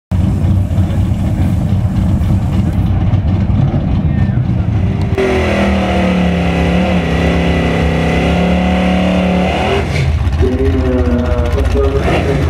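1971 Chevrolet Camaro drag car's engine running at low revs, then revved and held high for about four seconds during a burnout, with the rear tyres spinning and squealing. The revs drop near ten seconds, then rise again briefly near the end.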